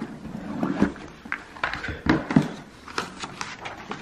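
A cardboard YouTube Silver Play Button box being unpacked by hand: the lid is lifted, the foam insert and paper letter are moved, giving scattered knocks, scrapes and rustles.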